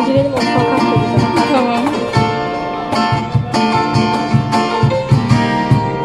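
Street band playing live: an acoustic guitar and a plucked string instrument carry a melody with some sliding notes over a steady cajón beat.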